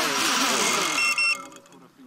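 FPV quadcopter's electric motors and propellers whirring at high speed, with the pitch rising and falling, while the drone is held in the hand. The sound cuts off about a second and a half in.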